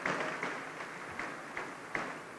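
Scattered audience applause in a large hall, fading away.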